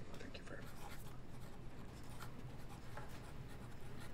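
A pen scratching across a paper form as a signature is written, in a run of short strokes over a low, steady room hum.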